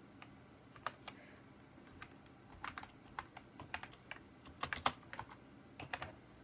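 Typing on a computer keyboard: irregular key clicks, a few scattered at first, then quicker runs of keystrokes in the second half.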